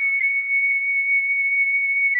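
Intro music: a flute holding one long, high, steady note after a short run of moving notes.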